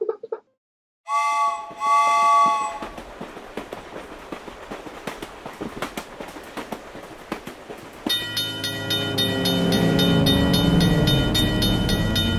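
Cartoon train sound effects: a steam-train whistle blows once, then wheels clatter over the rail joints in a quick, even rhythm. About eight seconds in, a louder rapid ringing of a level-crossing warning bell starts, with a lower sound falling in pitch beneath it.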